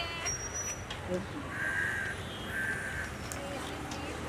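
Two half-second bird calls about a second apart, over faint street noise and distant voices.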